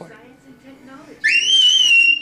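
A toddler's high-pitched squeal starts just over a second in, rising quickly and then held on one shrill pitch.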